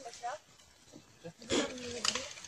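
People's voices outdoors: a few faint words at first, then about one and a half seconds in a louder voice that holds one pitch for about half a second, like a called-out word.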